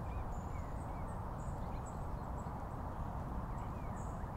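Steady low rumbling noise, with faint short chirps and high blips scattered over it.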